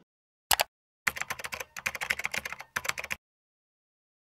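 Keyboard typing sound effect: a single click, then a rapid run of key clicks for about two seconds with two brief gaps, stopping sharply.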